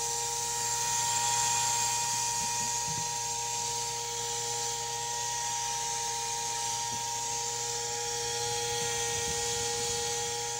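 Small electric motor or fan inside an egg incubator running steadily, a constant whine of several fixed tones over a hiss.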